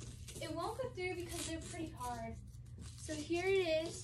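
Indistinct talking throughout, with a longer drawn-out voiced sound near the end, over a steady low hum.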